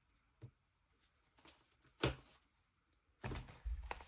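Quiet handling sounds of small paper crafting pieces: a few soft taps and one sharp click about two seconds in. Near the end come thuds and rustling as a thick junk journal is moved across the table.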